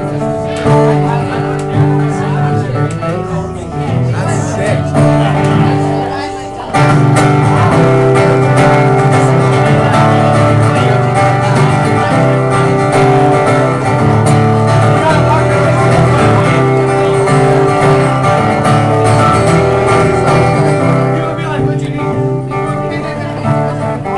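Acoustic guitar played solo, strummed chords ringing in an instrumental passage that goes off time. It breaks off briefly about six and a half seconds in, then comes back louder.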